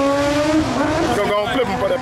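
A car engine held at high revs, a steady high-pitched drone that wavers and breaks up about halfway through.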